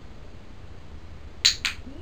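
Training clicker clicking about a second and a half in, heard as two sharp clicks in quick succession (the press and release), marking the cat's brief hold of the retrieve object.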